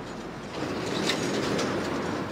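Steady rushing background noise on a reporter's open live-feed microphone, stepping up slightly about half a second in, before the reporter starts to speak.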